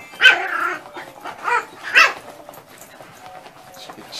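A dog barking three times: a longer bark right at the start, then two short barks close together about a second later.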